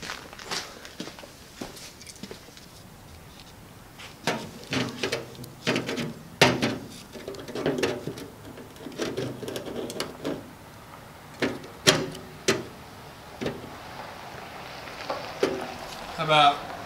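Scattered clicks, knocks and handling noise as hand tools are picked up and a pair of digital calipers is set against the edge of a steel fender. Two sharp clicks stand out, one a little before halfway and one about three-quarters through.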